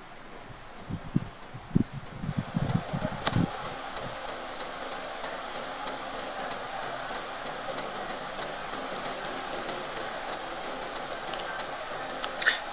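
Road noise inside a car's cabin, a steady hiss, with a cluster of low thumps in the first few seconds.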